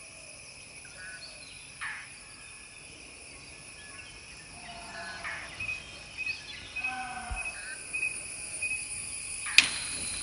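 Forest ambience: a steady high insect drone with scattered short bird calls, and a run of quick repeated chirps through the second half. Near the end a sudden sharp crack is the loudest sound.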